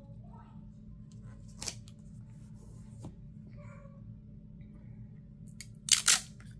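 Quiet paper handling with a few light clicks, then two sharp scissor snips near the end.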